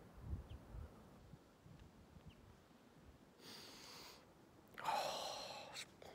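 A man breathing close to the microphone: a short breath about three and a half seconds in, then a longer, louder one about a second later. Low wind rumble on the microphone comes in the first second.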